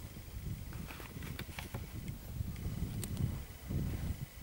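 Wind rumbling on the camera microphone, with a few faint scattered clicks.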